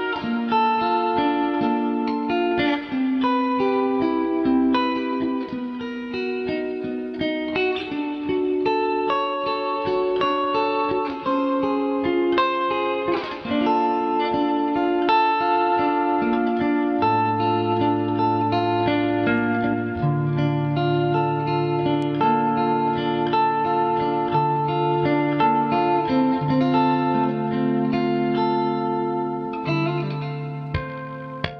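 Stratocaster-style electric guitar played through an amplifier in a clean, chiming tone: a slow melodic line of ringing notes, with lower bass notes sounding under the melody from a little past halfway.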